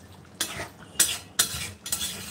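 Long metal spatula scraping against a metal kadai while stirring a thick curry, about four scrapes in two seconds.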